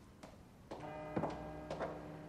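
Footsteps of hard-soled shoes walking at an even pace, a step about every half second from about a second in, over a soft sustained musical chord that begins just before the first step.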